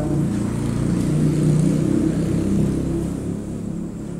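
Low rumble of a passing motor vehicle's engine, with a wavering pitch, easing off near the end.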